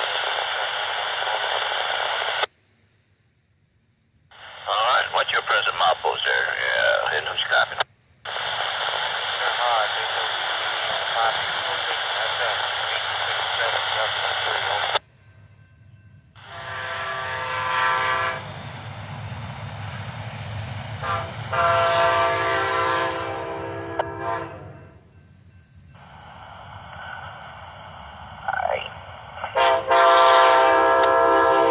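Railroad radio scanner giving static and garbled transmissions, broken by a few short gaps. About halfway through it gives way to the horn of the approaching Amtrak Silver Star's locomotive: two long blasts, a short one near the end, and another starting right at the end, over the low rumble of the oncoming train.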